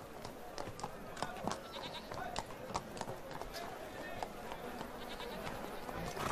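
Background ambience: a steady hiss with many scattered light clicks and knocks, and a few faint animal calls.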